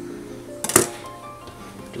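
A chef's knife chops once through onion onto a wooden cutting board, a sharp knock about three quarters of a second in, over background music of held notes.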